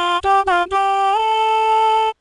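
UTAU singing synthesizer playing back a melody with a CV voicebank. The synthesized voice sings a few short notes, steps up in pitch about a second in and holds a long note.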